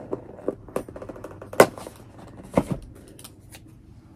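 Scissors cutting into packaging: a few sharp clicks and knocks, the loudest about a second and a half in and another about a second later.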